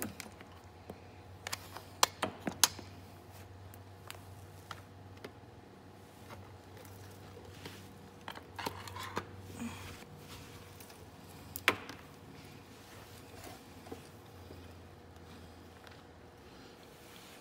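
Handling sounds from a metal bus electrical plug and multimeter test leads being picked up and set down. There are a few sharp clicks and taps, a cluster of them about two seconds in and one near the twelve-second mark, over a low steady hum.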